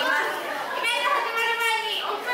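Visitors chattering, with high-pitched children's voices talking over one another.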